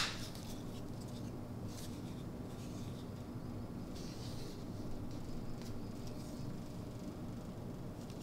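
Quiet handling noises: hands turning a hard plastic knife sheath, with a few faint rubs and light taps over a steady low hum.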